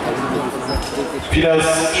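Voices calling in a sports hall, with dull thuds of a football on the hard court floor. A man's voice over the public-address system starts about a second and a half in.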